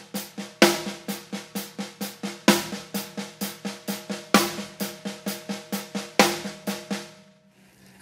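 Snare drum played in steady sixteenth notes by the left hand, about four strokes a second, quiet ghost notes with a loud accented backbeat stroke about every two seconds, and hi-hat eighth notes on top. The playing stops about a second before the end.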